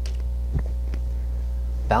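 Steady low electrical mains hum picked up by the recording, with one faint click about halfway through.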